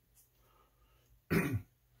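Near-silent room tone, then a man clears his throat once, a short rough burst near the end.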